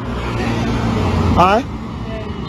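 A road vehicle passing close by, with engine rumble and tyre noise that swell for about a second and a half and then drop away. A short voice sound comes near the peak.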